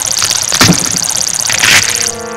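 Added fight-scene sound effects: a rapid, high-pitched pulsing buzz, with short swishes about two-thirds of a second in and again near the end.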